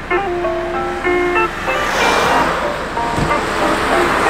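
Background music with a melodic line of held notes, and a road vehicle passing close by in the middle, its road noise swelling to a peak about two seconds in and fading away.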